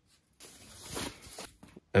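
Plastic bubble-wrap packaging rustling as the charger is handled out of it: the rustle swells for about a second, then fades, followed by a few light clicks.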